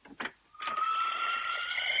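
A door latch clicks, then the door's hinges creak open in one long, steady squeal that rises slightly in pitch.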